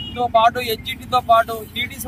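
A man speaking Telugu, with a steady low hum of road traffic underneath.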